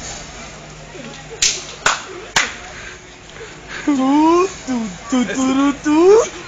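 Three sharp knocks in quick succession, then loud shouting voices from about four seconds in.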